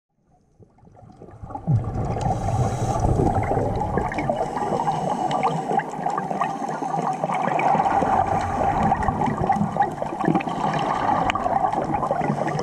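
Underwater sound through a camera's waterproof housing: a steady muffled rushing and bubbling with many small crackling clicks, fading in over the first two seconds.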